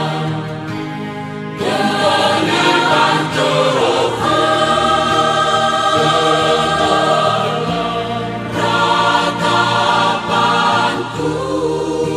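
Indonesian Christian worship song: sung vocals over instrumental backing, coming back in fully about one and a half seconds in after a brief quieter passage.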